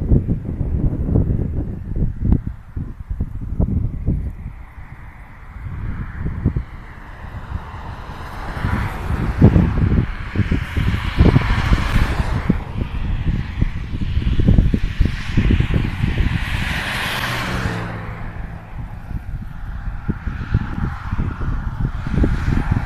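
Wind buffeting the microphone in uneven low gusts. Vehicles pass on the highway: two broad swells of tyre-and-engine noise, one around the middle and one near the three-quarter mark, the second trailing off into a falling engine tone as it drives away.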